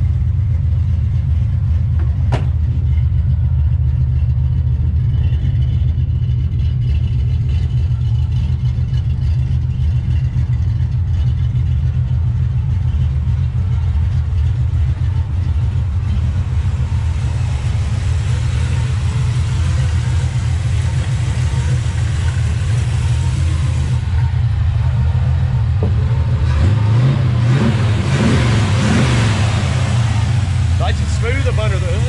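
1964 Chevrolet Chevelle's 350 small-block V8 idling steadily, a low even rumble through its headers and new dual exhaust with Flowmaster-style mufflers.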